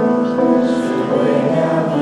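Small mixed choir of men's and women's voices singing in harmony, holding sustained notes.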